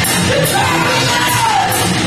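Live hard rock band playing: distorted electric guitar and drums with cymbal strokes about three a second. A singer holds one long yelled note from about half a second in until near the end.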